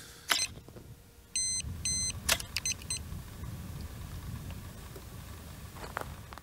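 Crisp clicks from a large format camera's lens shutter worked by cable release, one about a third of a second in and another just after two seconds, with two short high beeps about half a second apart between them and a few faint ticks after. A low rumble runs underneath.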